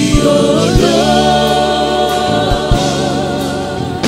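Live gospel worship music: a male worship leader sings into a handheld microphone, holding one long note with vibrato over the band, with a few drum hits.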